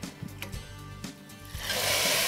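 Hot vanaspati tempering (baghar) poured into a pan of cooked daal, setting off a loud hissing sizzle about one and a half seconds in. Before it, a few light utensil clicks.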